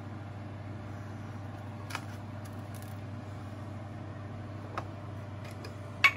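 A steady low hum with two faint clicks, one about two seconds in and one near the end.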